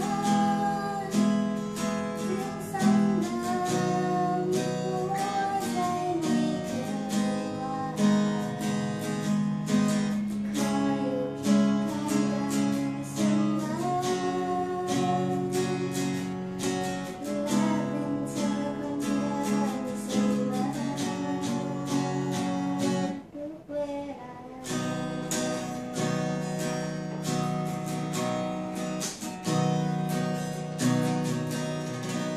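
A woman singing a slow pop song, accompanied by a man strumming an acoustic guitar. The music drops out briefly a little after two-thirds of the way through, then resumes.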